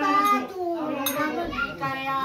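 Voices singing a devotional bhajan to Shiva (Bholenath), with long held notes that slide from one pitch to the next.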